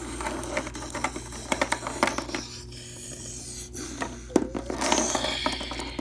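Hard plastic toy figures handled close to the microphone, clicking and scraping against each other and the table in quick irregular knocks and rubs.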